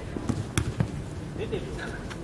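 Futsal ball being kicked while dribbled: three sharp knocks in the first second, the middle one the loudest, with faint shouts from players a little later.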